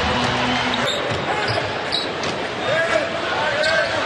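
Live basketball game sound in an arena: a steady crowd hubbub, with a basketball bouncing on the hardwood court and scattered short knocks.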